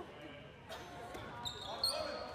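A handball bouncing with sharp knocks on a gym floor and sneakers squeaking briefly in the second half, under players' shouts in a reverberant gymnasium.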